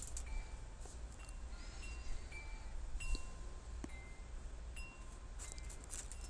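Faint wind chimes tinkling: scattered short high notes at several different pitches over a steady low hum, with a few light clicks.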